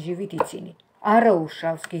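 A woman talking, with a couple of short sharp clicks, one about half a second in and one near the end.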